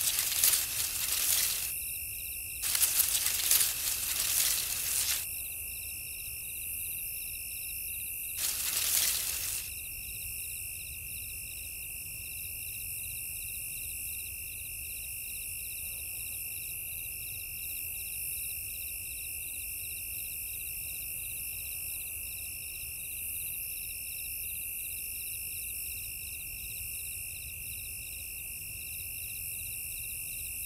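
A chorus of night insects singing: a steady high trill with a shorter pulsing chirp above it. Three bursts of rustling, as of something pushing through tall grass, fall in the first ten seconds.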